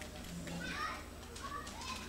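Indistinct chatter of several voices talking at once in a hall, with no single clear speaker.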